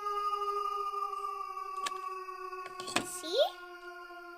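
A steady held tone with overtones, sinking slowly in pitch. Over it, scissors snip card: one sharp snip about two seconds in, then a few more clicks near three seconds and a brief rising squeak.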